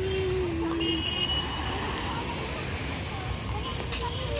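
Road traffic: a motor vehicle running with a steady low rumble, with a short held tone in the first second.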